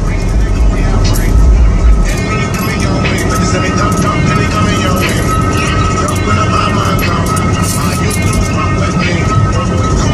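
Music with a voice playing inside a moving car's cabin, over a low road and engine rumble that eases off about two seconds in.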